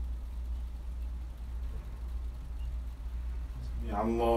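Steady low background hum, with no other clear sound until a man's chanted Quran recitation begins right at the end.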